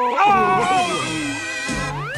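Cartoon cat's long wavering wordless yell while falling, sliding slightly down in pitch, over background music. A rising tone starts near the end.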